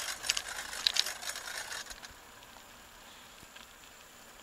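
Bicycle rattling and clicking as it is ridden along, the noise dying down about two seconds in to a quiet hiss.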